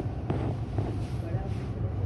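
Supermarket ambience: a steady low rumble with faint, indistinct voices in the background.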